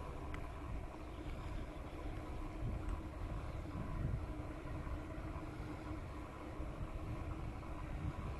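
Wind buffeting the microphone and ride noise from a small vehicle moving along a paved path, a steady low rumble with a faint even hum underneath.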